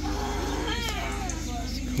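A short, high cat-like cry that glides up and down, about a second in, over a steady low hum.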